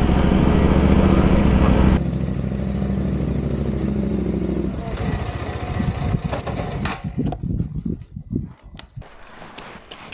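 Adventure motorcycle engine running at low speed, its note steady at first. About five seconds in the engine note falls away as the bike pulls up, leaving scattered clicks and knocks that grow quieter near the end.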